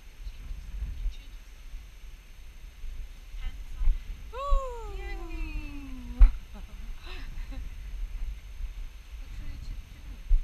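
A single long voice-like call, falling steadily in pitch over about two seconds, about halfway through, over a steady low rumble.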